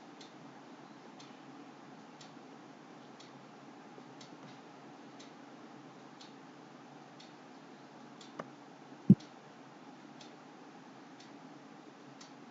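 Faint, regular ticking about once a second over a low steady room hum. About eight and a half seconds in comes a small click, followed at about nine seconds by a much louder, sharp click.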